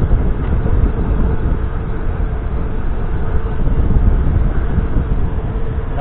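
Wind buffeting the microphone and tyre rumble from an electric scooter riding steadily along an asphalt street, a dense low rush with a faint steady whine underneath.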